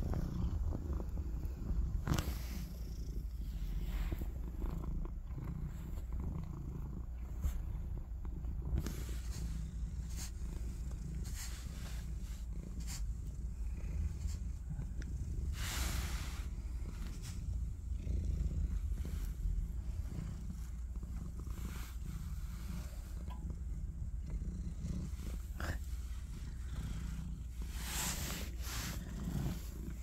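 Domestic cat purring steadily as it is stroked: a continuous low rumble, with a few short rustles of handling.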